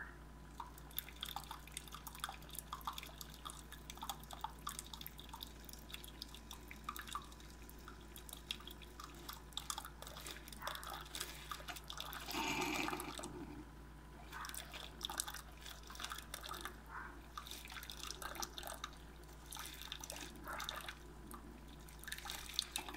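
Coffee trickling and dripping from the spout of a Cuisinart SS-15 single-serve brewer into a ceramic mug, with many small irregular drips over a low machine hum. A little past halfway there is one louder spell of about a second.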